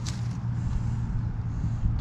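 A steady low rumble with an even hiss of outdoor background noise, and no distinct events.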